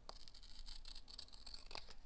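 Scissors cutting through a strip of kraft paper, faint, with a few small clicks as the blades close.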